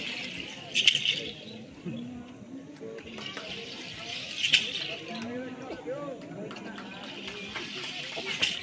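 Shaken rattles swelling and fading in a slow dance rhythm, with sharp accents about a second in and again past four seconds, over the many voices of a crowd.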